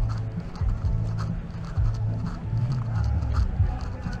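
Amplified live concert music: deep, sustained bass notes shifting in pitch under a repeated drum beat.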